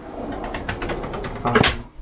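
A pull-out kitchen pantry drawer being pushed shut. A run of faint clicks and rattles ends in one sharp knock as it closes, about one and a half seconds in.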